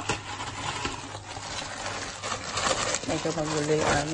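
Rustling and handling noise from a phone being moved about in the hand, with small clicks, and a short held voice sound near the end.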